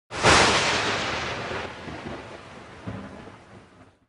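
Logo-intro sound effect: a sudden loud crash like a thunderclap, rumbling away and fading over about three and a half seconds.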